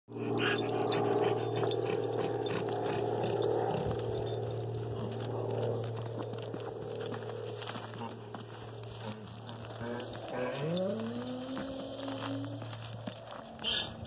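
A young donkey's hooves stepping and scuffing on dry dirt as it is led on a rope, over a steady low hum that is loudest in the first few seconds. About ten and a half seconds in, a tone rises in pitch and then holds for about two seconds.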